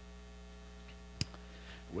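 Steady low electrical mains hum, with a single sharp click a little over a second in.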